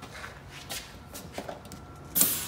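A brass air-hose fitting being hand-threaded into a wall-mounted air filter-regulator: faint handling noise with a few light metal clicks.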